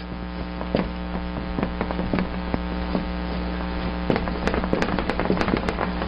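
Steady electrical mains hum in the recording, with many faint scattered clicks and ticks.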